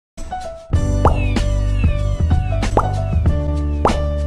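Short logo intro sting: electronic music with sustained notes over a deep bass, punctuated by quick rising blip effects about once a second.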